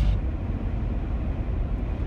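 Steady low road and engine rumble of a car driving at highway speed, heard from inside the cabin.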